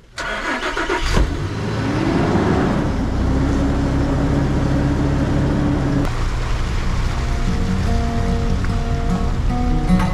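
A vehicle's engine is started, catches, revs up and settles to a steady run as the vehicle pulls away. Background music comes in about six seconds in.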